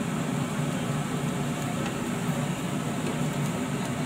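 A steady low mechanical drone, like a fan or motor running, with a few faint light clicks over it.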